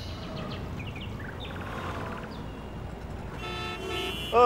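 Outdoor street ambience: a low steady rumble with a few short high chirps, then a sustained horn-like tone starting near the end.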